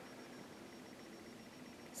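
Quiet room tone: a faint steady hiss with a faint high steady tone, and no distinct event.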